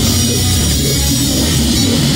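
Death metal band playing live at full volume: fast drums under down-tuned guitars and bass in a dense, unbroken wall of sound.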